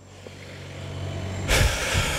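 A heavy road vehicle's engine hum growing steadily louder as it approaches, then a sudden loud rush of hissing noise about a second and a half in.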